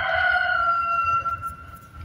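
A rooster crowing: one long held call that trails off about a second and a half in.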